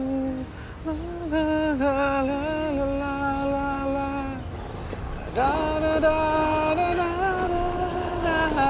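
A man singing a slow ballad to his own acoustic guitar, holding long notes. One phrase ends about four and a half seconds in and the next begins about a second later.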